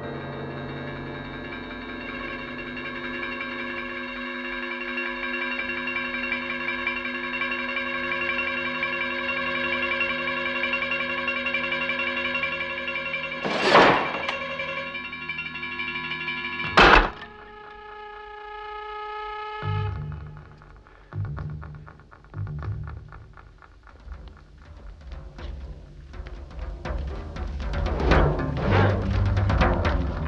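Suspenseful film score of sustained held chords, cut by two sharp, loud hits about fourteen and seventeen seconds in. The score then turns to a low pulsing rhythm, with quick knocks and thuds building near the end as a fight breaks out.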